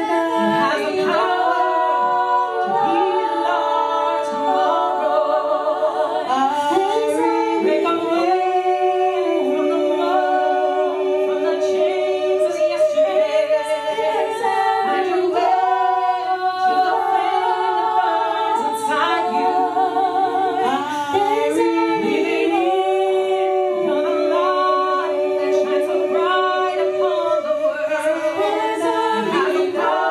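Small a cappella vocal group of four singers singing in close harmony into microphones, several voices holding chords together, some notes sung with vibrato.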